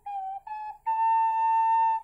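Small pendant ocarina with a short windway, played with the lower lip covering the fipple to reach low notes missing from its normal scale. It plays a short low note that sags slightly in pitch, a short note a little higher, then a long steady held note.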